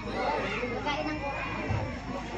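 Background chatter: several people talking at once, none of it clear.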